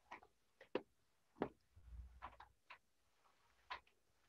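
Near silence with faint, irregular clicks and light knocks, about eight in four seconds, the loudest about a second and a half in.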